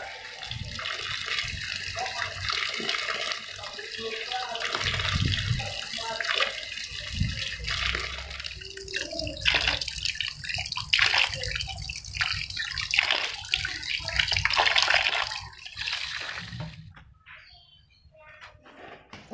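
Water running from a tap and splashing as cucumbers are washed by hand in a plastic basin, with louder splashing in the second half; the water stops about a second before the end.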